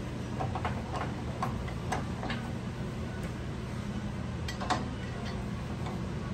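Small lathe running with a steady low motor hum, and irregular sharp clicks and taps from the tool working the uneven walnut blank. The clicks come several in the first two seconds or so, and the loudest comes just before the five-second mark.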